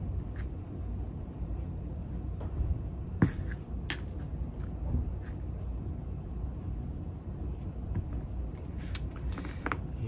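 Scattered light clicks and taps as a small paintbrush and the shaker parts are handled on a workbench, over a steady low hum.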